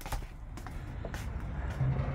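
Footsteps and knocks on a narrowboat's floor, spaced about half a second apart, over a steady low rumble.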